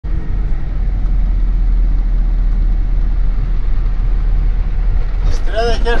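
Steady low rumble of a minibus on the move, its engine and road noise heard from inside the cabin. A voice starts speaking near the end.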